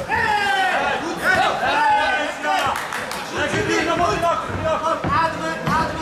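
Cornermen and spectators shouting over one another, several voices calling out all through.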